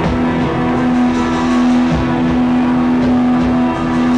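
A live band plays loudly on electric guitar and keyboards, a dense, distorted wash of sound over one steady, held low drone note.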